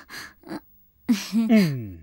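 A person's voice: two quick breathy gasps, then about a second in a single drawn-out vocal sound that slides steadily down in pitch, a comic exclamation rather than words.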